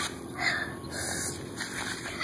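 A person breathing close to the microphone: two short, breathy puffs in the first second and a half.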